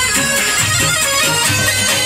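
Loud live Jordanian folk dance music: a reedy, bagpipe-like held melody over a steady, repeating low beat, with hand clapping from the dancers.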